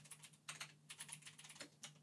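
Faint typing on a computer keyboard, a quick, irregular run of key clicks as a search is typed in, over a faint steady low hum.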